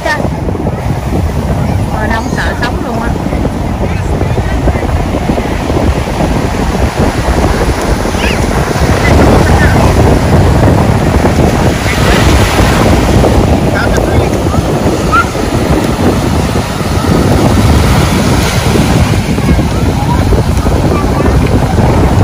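Ocean surf breaking and washing up the shore, a steady loud rush of water, with wind buffeting the microphone.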